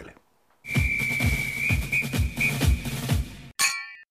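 Short channel intro jingle: music with a beat of about three hits a second and a held high whistle-like tone. It ends near the end with a single bright bell ding.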